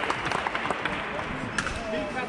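Scattered hand clapping from a small crowd, thinning out, over background chatter.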